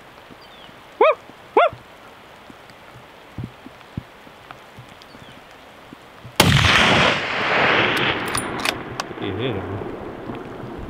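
A single loud rifle shot at a bull elk about six seconds in, its report rolling on and fading over the next few seconds.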